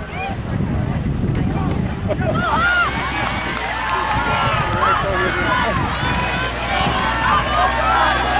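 Wind buffeting the microphone, then from about two seconds in a crowd of many voices shouting and cheering together as a cross-country race starts.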